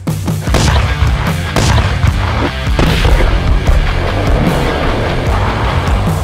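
A cluster of powerful firecrackers going off in rapid succession inside a dirt pit, set off to blast the hole deeper: a dense, continuous string of bangs and booms.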